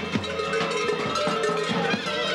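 Many large metal bells worn on the costumes of fur-clad survakari (kukeri) clanging together in a dense, irregular jangle as the wearers move.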